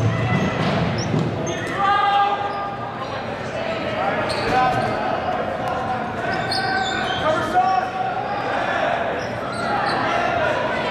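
Rubber dodgeballs bouncing and smacking on a hardwood gym floor while players shout calls, echoing in a large gym.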